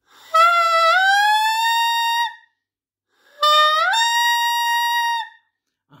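Saxophone mouthpiece with reed blown on its own, without the instrument: two held tones, each about two seconds long, with a short pause between them. Each tone starts lower and then rises in pitch as the player tightens the embouchure into a smile, a gradual slide in the first and a quick step up in the second.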